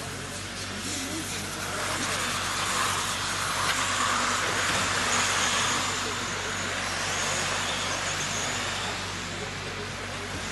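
Radio-controlled cars running laps on an asphalt track: a rushing whir of motors and tyres with a faint high whine, swelling about two seconds in as the cars come close and easing off toward the end.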